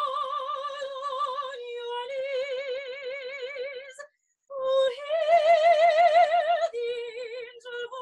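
Unaccompanied classical soprano voice singing long held notes with a wide vibrato. She breaks off for a breath about four seconds in, then rises to a higher sustained note before dropping lower near the end.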